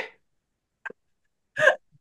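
A woman's laughter trailing off, then a near-silent pause with a faint tick, and one short burst of laughter a little before the two-second mark.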